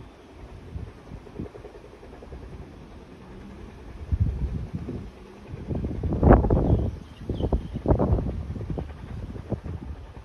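Wind buffeting the microphone, a low uneven rumble that surges in gusts, loudest a little past the middle.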